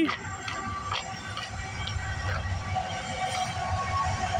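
Diesel locomotives of an approaching CN freight train, heard as a steady low rumble with faint steady tones above it that grow stronger in the second half.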